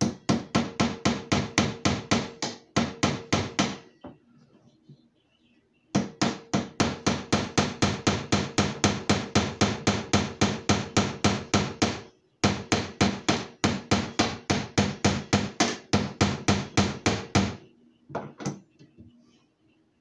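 Rapid, even tapping on a nail held in a frog gig's metal socket, about five sharp taps a second with a faint ring under them. It comes in three long runs with short breaks, and a last couple of taps near the end. The nail is being forced through the socket without a hammer.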